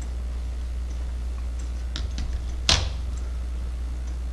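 A few light clicks, then one louder knock about three-quarters of the way through, from 3D-printed plastic gears being handled, set down and picked up. A steady low hum runs underneath.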